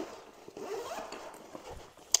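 Zipper on a fabric travel backpack being pulled open: a soft, uneven rasp as the main compartment is unzipped.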